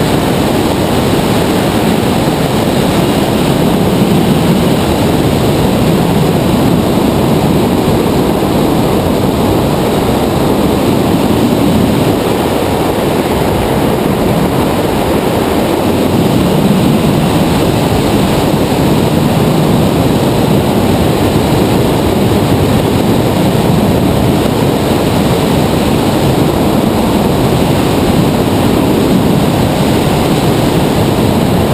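Steady, loud rush of airflow over a hang glider's camera microphone in flight, a continuous low buffeting roar of wind noise.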